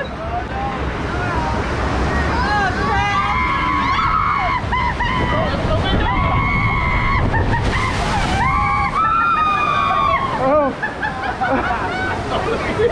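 Rushing whitewater and heavy spray dousing an open river-rapids raft, with riders letting out several long, held screams. A sharp burst of spray hits about eight seconds in.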